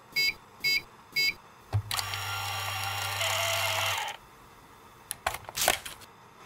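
Small ticket printer beeping three times, then a knock and about two seconds of steady motor whirring and hum as it prints a slip of paper. A few quick rustling strokes near the end as the paper is pulled from the slot.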